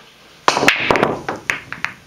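Pool break shot: a loud crack about half a second in as the cue ball smashes into the racked balls, then a quick run of balls clacking against each other and the cushions that thins out over the next second and more.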